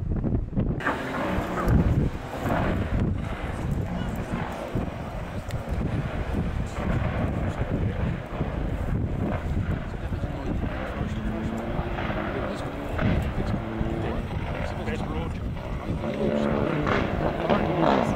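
Rally car engines heard at a distance across a valley, rising and falling as the cars accelerate and lift off along the stage; a stronger engine note comes in near the end as the next car approaches.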